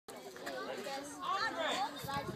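Indistinct chatter of voices, fairly high-pitched, with no clear words.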